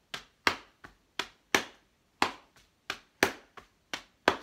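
Hambone body percussion: one hand slapping the thigh and chest in a repeating long-short pattern, about eleven sharp slaps over four seconds.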